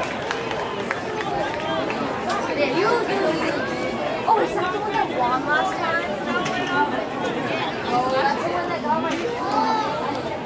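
Several spectators talking at once, their overlapping voices making a steady chatter with no single clear speaker.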